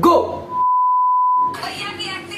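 A single steady electronic beep, one pure tone held for about a second, that starts and cuts off abruptly.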